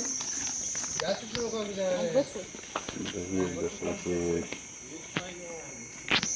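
A steady, high-pitched insect buzz runs under indistinct voices talking, with a few light clicks.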